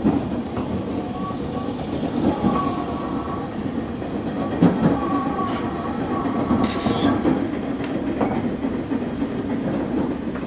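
Train running noise heard from inside a passenger car: a steady rumble of wheels on the rails with some rail-joint clatter. A short hiss comes about seven seconds in.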